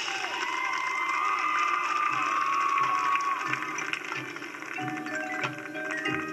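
Marching band music, with the crowd cheering and whooping over it for the first few seconds after a held chord. Then quieter sustained band notes and light clicking percussion come in near the end. The sound is a dubbed VHS recording.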